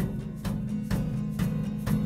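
Acoustic band playing an instrumental bar between sung lines: strummed acoustic guitar over a steady percussion beat of about two strikes a second.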